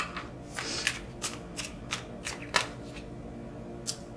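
A tarot deck shuffled and worked through by hand: a run of short, crisp card snaps and rustles, roughly three a second, as a card is drawn from the deck.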